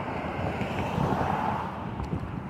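Wind buffeting a phone's microphone, a low irregular rumble, over a steady rushing noise that swells about a second in.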